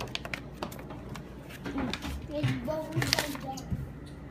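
Small packaging being handled: a few sharp clicks near the start and a brief crackle about three seconds in. A soft, indistinct voice murmurs in between.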